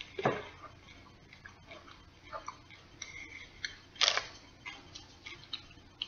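Candy-coated M&M's being chewed: faint irregular crunching clicks of the candy shell, with two louder cracks, one just after the start and one about four seconds in.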